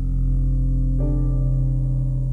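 Slow, calm meditation music: a sustained low drone with soft notes over it, a new note coming in about a second in.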